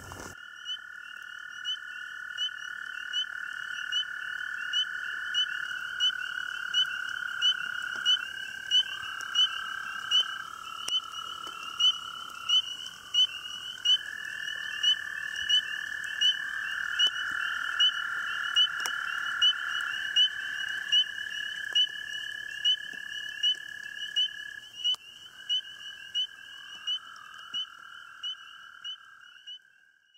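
A chorus of frogs calling: a high, short peep repeated a little more than once a second, over long, steady, lower trills that overlap and change pitch every few seconds. It fades out near the end.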